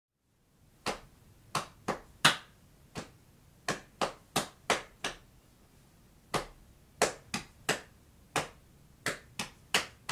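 Sharp finger snaps keeping an uneven, syncopated rhythm, about two or three a second with a short break in the middle. They are the only percussion backing a stripped-back song.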